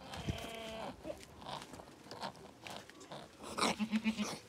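Goats bleating: a bleat about a second long at the start, then soft crackling in dry straw, and a lower, pulsing bleat near the end. A newborn kid is on the straw, just after its birth.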